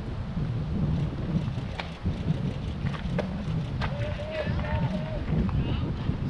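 Wind rumbling on the microphone, with distant voices of players calling out across the field; one held call comes about two thirds of the way in, and a few faint clicks sound through it.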